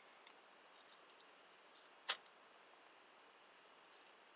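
Faint chirping of crickets at night, with a single sharp click about two seconds in.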